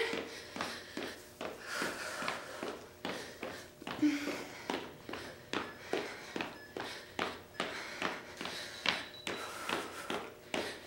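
Sneakered feet stepping or lightly jogging in place on a studio floor, an even patter of about two to three steps a second, with faint breathing.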